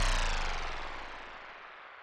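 The tail of an electronic intro sting: a synth tone with many overtones sliding steadily down in pitch and fading away.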